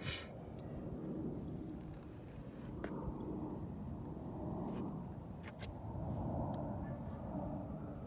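Low outdoor background rumble that slowly swells and fades, with a few faint clicks scattered through it.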